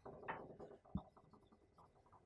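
Marker writing on a whiteboard: a run of faint, short scratchy strokes through the first second or so.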